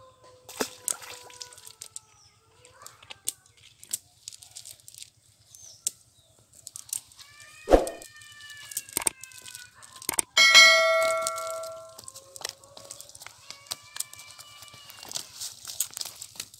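A cast net and dry leaves being handled on the ground, with scattered rustles and clicks and a few short pitched calls. About ten and a half seconds in, a loud metallic ding rings out and fades over a second and a half.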